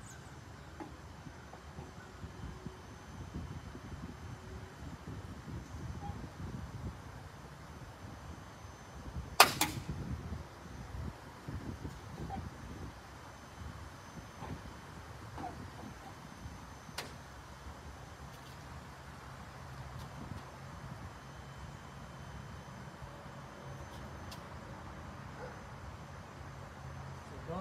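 A single sharp, loud snap about nine seconds in and a smaller click around seventeen seconds, over low rustling handling noise, as an International LT semi-truck's grille is pressed onto its mounting clamps.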